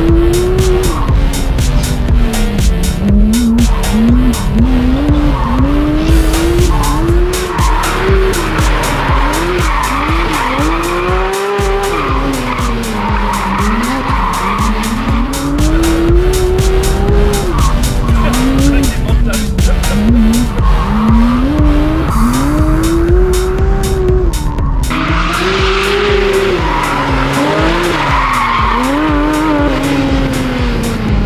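Porsche 992 GT3 RS's naturally aspirated 4.0-litre flat-six, fitted with an FI Exhaust system, revving up and down over and over while the car drifts in circles, with tyres squealing.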